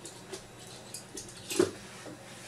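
Light clicks and taps of small tools and a plastic remote control being handled at a desk, with one sharper knock about one and a half seconds in.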